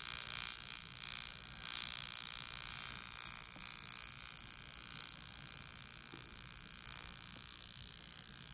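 OxyLift high-frequency facial wand running against the skin, a steady high hiss with irregular faint crackles as it gives small electric sparks while its glowing electrode is moved over the nose and chin.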